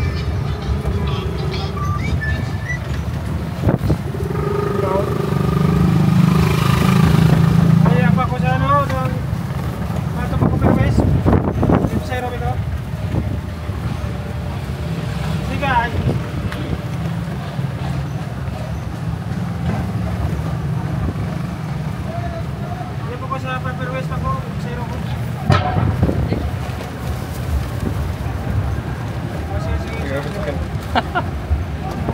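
Riding in a tricycle cab on a town street: a steady low rumble of tyres and cab on the road, swelling for a couple of seconds early on, with a few sharp knocks and rattles.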